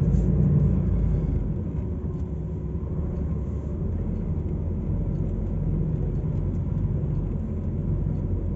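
A DAF truck's diesel engine running steadily as the loaded rig drives slowly, heard from inside the cab as a low rumble. It is a little louder in the first second, then settles to an even note.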